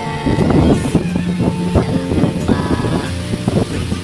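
Background music: sustained pitched notes that change every second or so, with percussive hits.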